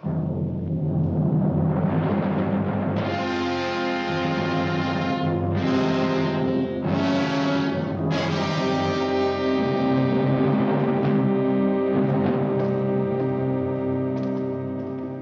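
Dramatic orchestral film score that comes in suddenly with a low drum roll. Brass chords enter about three seconds in, swell twice, and are then held.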